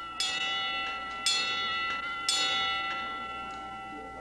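Chiming clock striking, three bell strokes about a second apart, each ringing on and fading, which the speaker takes for the clock striking four.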